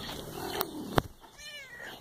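A sharp tap about a second in, then a short, faint meow from a big domestic cat.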